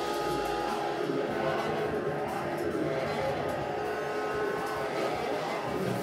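Large improvising orchestra playing a dense, sustained collective texture: many overlapping held tones at once, with a few pitches sliding.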